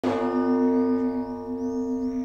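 A bell-like chime opening an intro jingle: one tone struck at the start and ringing on, fading slightly, with faint high tones gliding above it.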